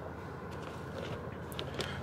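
Steady low hum inside the cabin of a 2021 Toyota Corolla idling in park, with a few faint small clicks and rustles near the middle.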